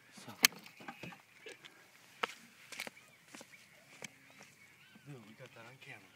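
A sharp knock about half a second in, then a few fainter clicks, with faint voices near the end.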